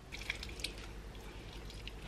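Faint squelch and drip of a lime being squeezed in a metal hand citrus press, with a few soft clicks over a low steady hum.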